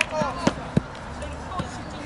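A football striking the ground or a boot: three sharp thuds within the first second, amid shouts from the players.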